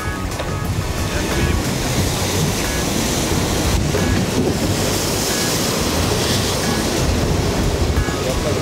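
Sea water rushing and churning past the hull of the fast-sailing maxi-trimaran Banque Populaire V, with wind buffeting the microphone. The noise is steady throughout.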